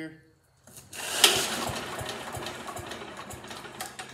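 The small engine of a 1947 Pond Lever Steer garden tractor running. It comes in with a sharp bang about a second in, then runs on as a steady, rapid mechanical clatter that slowly gets quieter.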